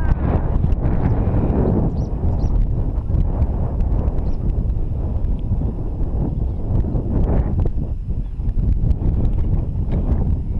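Wind buffeting an action camera's microphone: a loud, steady low rumble, with a few faint knocks.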